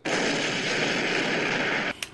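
A produced noise sound effect, an even rush like static, holding steady for about two seconds with a faint steady tone underneath, then cutting off suddenly. It serves as the transition sting into a podcast segment.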